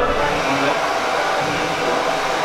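Steady whirring hum of an electric blower running.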